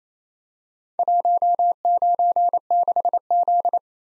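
Morse code sent as a single steady beep, keyed on and off in dots and dashes, starting about a second in. It spells the four characters 1, 9, 6, Z.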